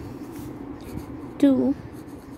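A pen scratching across notebook paper as a line of handwriting is written, faint short strokes, with a woman saying the single word "to" about one and a half seconds in, louder than the writing.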